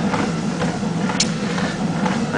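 Treadmill motor and belt running with a steady low hum.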